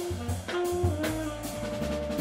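A jazz quartet of tenor saxophone, trumpet, upright bass and drum kit playing live. A horn holds one long note through the second half over the walking bass, with drum and cymbal hits.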